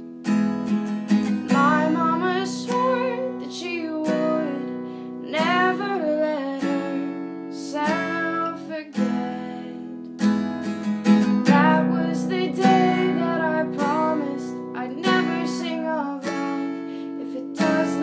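Acoustic guitar with a capo strummed in steady chords while a woman sings a slow ballad melody over it.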